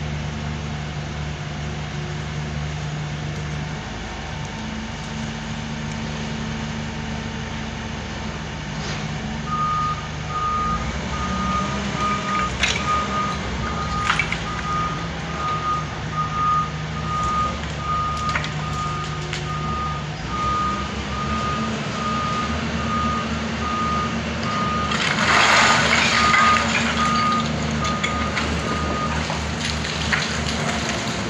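A Doosan wheeled excavator's diesel engine runs steadily, and from about a third of the way in its warning alarm beeps at one high pitch, about one to one and a half beeps a second, until shortly before the end. A few sharp knocks sound through the middle, and a loud burst of noise comes near the end.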